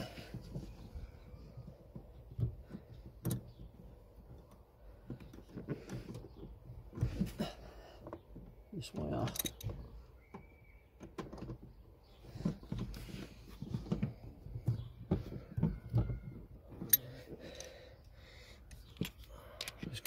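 Scattered light clicks, taps and rustles of hands working behind a car's pedals, starting a nut onto the pedal box's bottom stud by hand.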